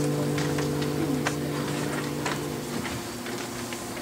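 The last chord of a hymn, held on a digital piano and acoustic guitar, fading away and dying out a little under three seconds in. A few faint clicks follow.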